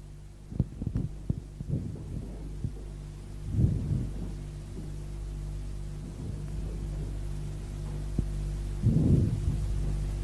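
Steady electrical hum of an old tape recording, with a scatter of soft knocks in the first two seconds and two low thumps, about four seconds in and about nine seconds in.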